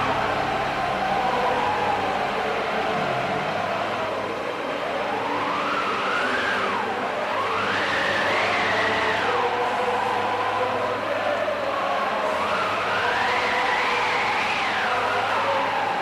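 A siren-like wail in a rock recording, sweeping slowly up in pitch and falling back three times over a steady droning chord.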